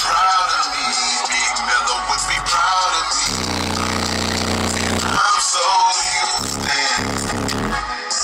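Hip-hop track with processed rap vocals playing loud through a car stereo with DB Drive WDX G5 subwoofers, heard inside the car's cabin. A deep bass note is held for about two seconds in the middle.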